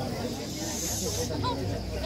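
A brief high hiss, under a second long, about half a second in, over background chatter of people talking.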